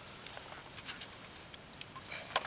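A few faint, scattered clicks and small drips as a live shiner is lifted from a water-filled bait bucket with a small dip net.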